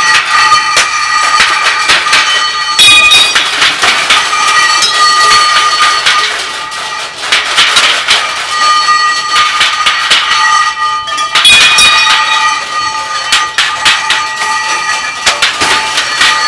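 Improvised noise music played on scrap metal: a dense, loud clatter of metal objects being struck and scraped, with steady high ringing tones running through it and a brief dip in loudness about seven seconds in.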